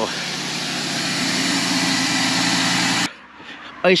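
Car engine idling steadily, freshly started off a portable jump starter, cutting off abruptly about three seconds in.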